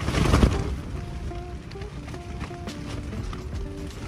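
Strong wind buffeting and shaking a tent's fabric, loudest in a rush in the first second, then easing to a steady rustle. A slow, soft melody of background music plays over it.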